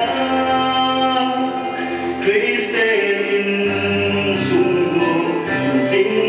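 A slow song with long held sung notes over a steady low accompaniment.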